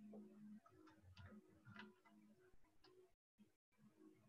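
Near silence: faint room tone over a video-call line, with a few faint clicks and two brief cut-outs to dead silence near the end.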